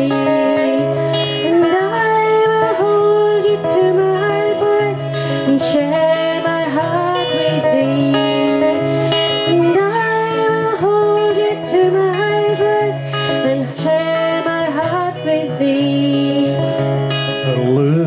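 A woman singing a traditional-style folk song to acoustic guitar accompaniment, her melody moving over sustained low notes from the guitar.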